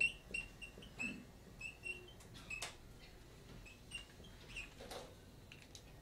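A marker squeaking on a whiteboard in a string of short, faint, high squeaks as characters are written, with a few light taps.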